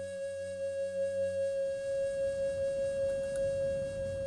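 Background music: one long, steady flute note held through, over a low drone that drops out a little under two seconds in.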